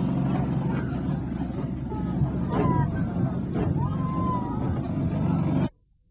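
A truck engine running steadily under load while the vehicle drives, with a few sharp knocks over it. The sound cuts off suddenly near the end.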